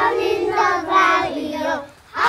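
A group of young children singing a song together in unison, with a short break just before the end.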